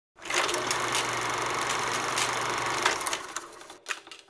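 Movie film projector running: a steady mechanical whirr and clatter over a low hum, with scattered clicks, fading out in the last second.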